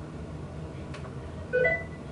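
A short two-note rising electronic beep from a laptop, about one and a half seconds in, after a faint click.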